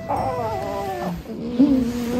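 Asian small-clawed otter whining for attention: a call that falls in pitch over about a second, then a lower, steadier whine that lifts briefly near the end.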